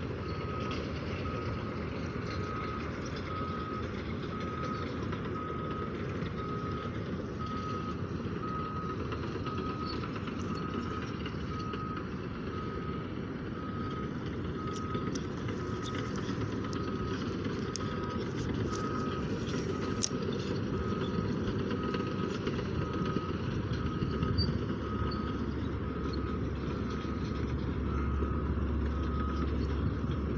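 A vehicle's reversing alarm beeping at one steady high pitch, about once a second, over a low steady rumble of traffic that grows louder near the end.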